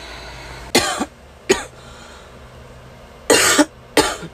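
A woman coughing: one cough about a second in, a shorter one half a second later, and a longer, harsher one near the end. A sick person's cough, from an illness with body aches and a blocked throat that she suspects may be COVID.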